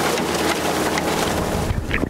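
Steady rush of churning, splashing water in a fish-stocking truck's holding tank.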